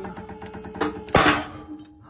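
Rope system snapping under a pull test: a single loud, sharp crack just over a second in, after a smaller crack, as a prusik wrapped around two ropes fails at a peak of about 19.8 kN. The cordage breaks before the prusik slips.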